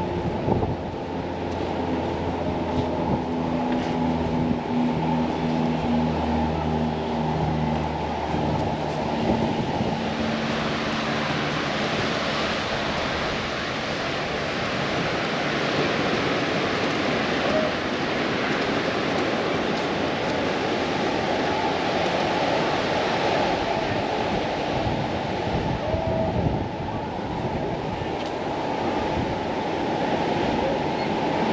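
Ocean surf breaking and washing up on a sandy beach, a steady rush that grows fuller about a third of the way in. Before that, a low steady hum with several pitches lies under it.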